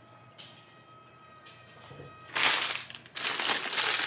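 Takeout food packaging crinkling and rustling as it is handled, in two loud spells starting a little past halfway, with a short break between them.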